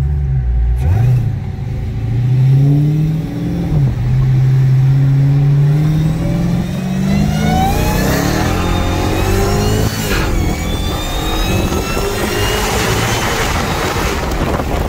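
Dodge Charger SRT Hellcat's supercharged V8 at full throttle in a hard acceleration pull, heard from inside the cabin. The engine note climbs in pitch, drops back at each upshift and climbs again, with rising wind noise as speed builds.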